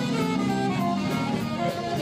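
Live jazz band playing: a saxophone carries a melody of held notes over electric guitar, drum kit and congas, with a cymbal ticking out the beat about three times a second.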